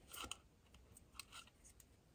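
Faint, short rustles and light clicks of fingers picking small punched paper discs off a cutting mat and handling a rolled paper cartridge tube, heard a few times over otherwise near silence.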